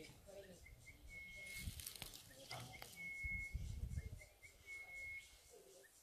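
A bird calling over and over: a few short high pips followed by a longer steady whistle, the phrase coming about every two seconds. Rustling and low thumps of the microphone being handled come in the middle, loudest from about three to four seconds in.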